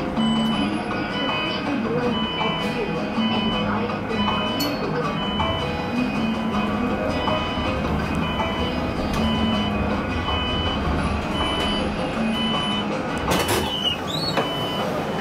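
An electronic warning beeper on a Skywell NJL6859BEV9 battery-electric bus beeps steadily about twice a second over the low running noise of the bus pulling away. A brief loud knock comes near the end.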